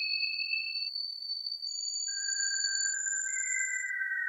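Pure sine tones played back from lines painted on a spectrogram: two or three high, steady whistle-like tones overlap at a time, each gliding slowly in pitch. The upper tones drift slightly upward and stop partway through, while lower tones come in about halfway and slowly fall.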